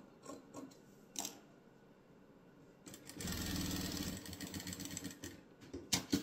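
Sewing machine stitching a seam, starting about three seconds in, running steadily for about two seconds, then slowing to a stop. Before it come a few soft clicks of fabric being handled and lined up under the presser foot.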